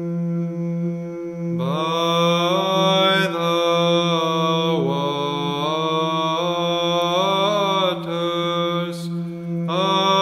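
Orthodox church chant of a hymn: a steady held drone note sung underneath, and a melody line that enters about a second and a half in, gliding between notes. The melody drops out briefly near the end and then comes back in over the unbroken drone.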